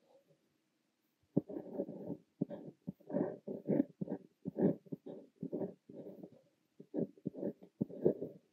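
Fine nib of a Montblanc Le Petit Prince fountain pen scratching on notebook paper as it writes Korean characters by hand. Quiet for the first second or so, then a quick run of short, separate pen strokes.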